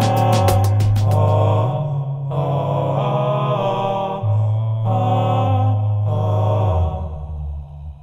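Multitracked a cappella male voices singing slow, sustained harmony chords over a deep held bass note, the chords changing every second or two. The chords fade out about seven seconds in.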